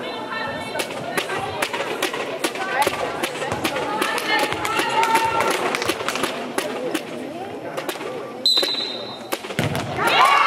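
Handball hall sounds: players and spectators calling out, with many sharp irregular knocks and claps on the court. Near the end comes a short, steady, high referee's whistle.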